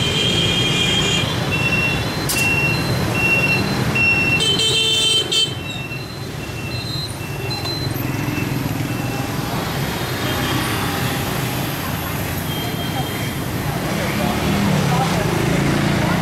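Hanoi street traffic: motorbike horns beeping again and again, with one longer, stronger blast about five seconds in, over the steady hum of passing motorbike engines.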